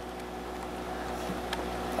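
Heavy rain falling steadily, an even hiss, over a low steady hum from a running Harbor Freight generator.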